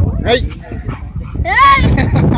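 A boxer and a Labrador retriever play-fighting, with dog calls: a short rising yip about a quarter second in and a louder, high call that rises and falls near the end.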